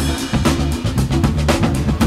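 Live funk band playing an instrumental groove: a busy drum-kit pattern of snare and bass drum over a repeating bass line.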